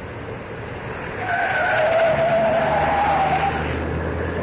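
1930s cars driving fast through a curve, engines running, with tyres squealing from about a second in until near the end.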